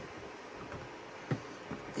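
Fingers fumbling at the latch of a clear plastic photo storage box, with a single faint click a little past a second in; otherwise only quiet room sound.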